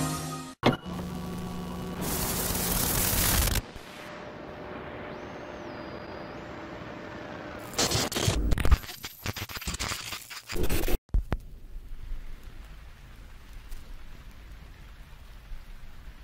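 Edited intro sound effects with no music or speech: a loud rushing noise lasting about a second and a half, then a quieter steady hiss, then about three seconds of rapid sharp cracks like gunfire. After that, low background noise runs on.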